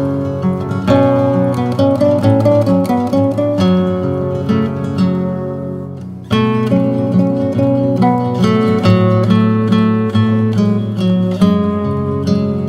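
Background music: acoustic guitar playing plucked notes. It fades down about halfway through, then comes back in suddenly.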